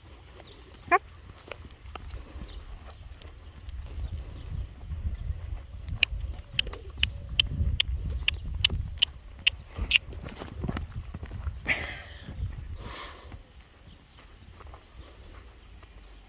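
A horse cantering loose in a sand arena: its hooves thud on the sand, with a run of sharp clicks about three a second in the middle, and the sound fades in the last couple of seconds.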